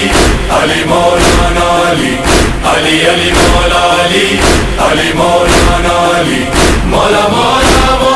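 Male voices chanting an Urdu devotional song in praise of Ali over music, with sharp beats about once a second.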